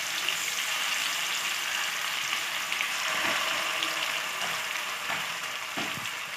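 Masala-marinated fish slices shallow-frying in hot oil in a wok: a steady sizzle, as more slices are laid into the pan.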